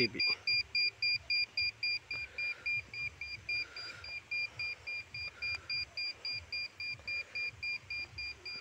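Digital satellite dB meter beeping about four times a second in one steady high tone, its alignment tone while locked onto a satellite signal from the dish's LNB. The beeps grow somewhat softer after about two seconds.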